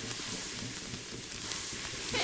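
Fire crackling: a steady hiss of small pops and crackles.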